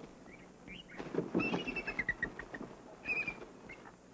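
Vultures and a tawny eagle squabbling at a carcass: short, high calls in quick runs, one falling series about a second and a half in and another call near the end, over low scuffling noise.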